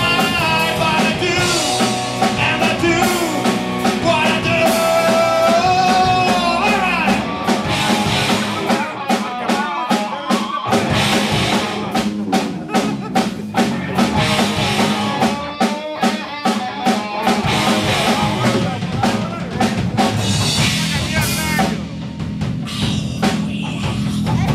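Live rock band playing with electric guitars, bass guitar and drum kit. For the first several seconds a held, bending melodic line rides over the band; then the drums come to the fore with dense, regular hits, broken by two short breaks in the low end.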